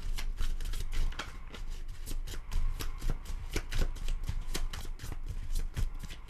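A tarot deck being shuffled by hand: a quick, irregular run of soft clicks and slaps of card against card.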